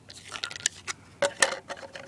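Several sharp plastic clicks and taps from a toy mini wheelie bin's lid being worked by hand. The lid is damaged but still holds on by one of its hinge fittings.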